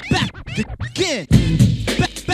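Turntable scratching: a vinyl record pushed back and forth by hand, its pitch sweeping up and down, chopped into short pieces by the mixer's crossfader. A beat with heavy bass drops back in a little past halfway.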